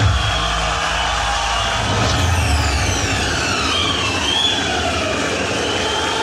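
Sound effects played loud over loudspeakers: a steady rumble with noise across the range, and from about two seconds in several whistling tones that fall in pitch.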